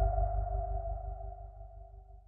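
Tail of an electronic logo sting: a held synth tone over a deep low hum, fading steadily away.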